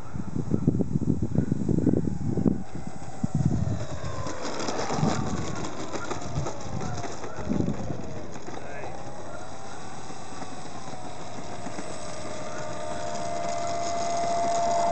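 Radio-controlled P-51 Mustang model's motor whining, its pitch sliding down and up as the throttle is worked while the plane comes in and rolls out on the tarmac, then holding a steady tone near the end with the propeller turning slowly. Low, uneven rumbling fills the first few seconds.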